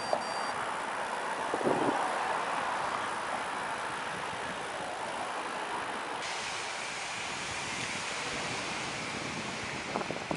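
Steady street noise of road traffic driving past, with a rushing noise, swelling briefly a couple of seconds in.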